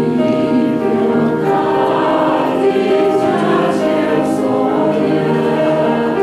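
Church choir singing a hymn in Taiwanese Hokkien.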